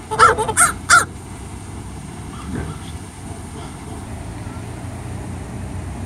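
White domestic geese honking: a quick run of about five short, loud honks in the first second, then one faint honk a little past the middle.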